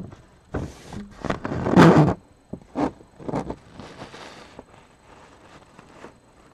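A paper sheet rustling and scraping as it is handled in front of the microphone, in several short bursts, the loudest about two seconds in.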